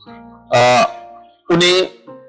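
A man's voice, two short loud utterances about a second apart, over soft background music with steady held notes.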